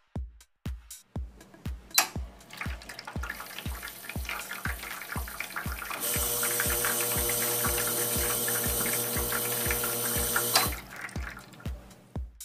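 La Spaziale S1 Dream espresso machine dispensing through the group: its pump runs and water streams from the portafilter spouts onto the drip tray. The flow builds gradually, turns into a steady, louder pour with a hum about halfway in, and stops about a second before the end. A steady music beat plays underneath.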